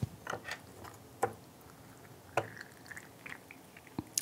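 Faint, scattered small clicks and taps with a few drips: teaware being handled on a bamboo tea tray while tea steeps in a glass brewer.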